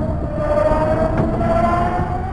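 A sustained tone with overtones, rising slowly and steadily in pitch over a low rumble.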